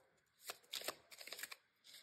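A deck of tarot cards being shuffled by hand: a few faint, short rustles and flicks of card on card, about half a second, one second and a second and a half in.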